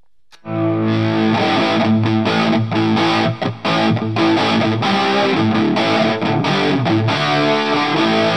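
Electric guitar through an Orange Micro Terror 20-watt valve-preamp amp head driving a 4x12 speaker cabinet, strumming overdriven rock chords that start about half a second in. The gain is backed off from full, giving a meatier, somewhat cleaner crunch than at full gain.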